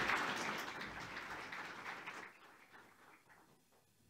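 Audience applauding, the clapping thinning out and dying away about two seconds in.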